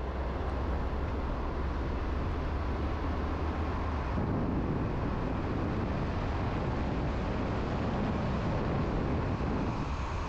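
Car driving at highway speed: steady road and tyre noise with a low engine hum, which shifts about four seconds in.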